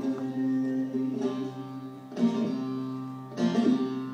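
An ensemble of bağlamas, Turkish long-necked lutes, playing an instrumental passage of a türkü: steady ringing notes, with sharp plucked strokes about a second in, at two seconds and again near the end.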